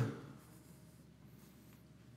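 The end of a spoken word fading out, then quiet room tone with faint rustling.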